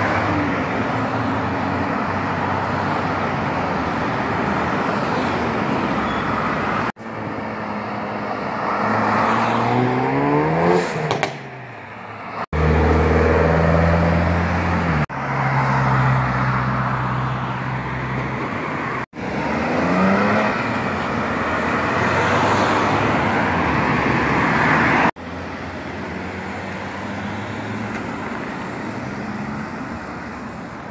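A run of short roadside clips of cars passing and accelerating away, joined by abrupt cuts. In some clips the engine note climbs in rising sweeps as the car speeds off, and in others a steady low engine drone and tyre noise go by.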